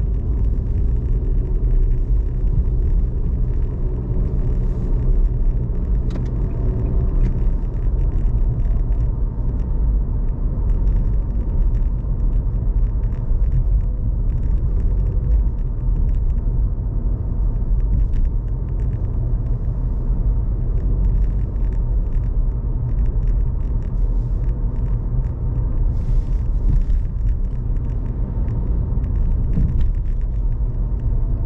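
Steady low rumble of a car in motion heard from inside the cabin: road and engine noise from the drive.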